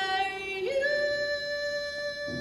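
A female vocalist singing unaccompanied into a microphone: a held note that slides up to a higher note about two-thirds of a second in and is sustained steadily.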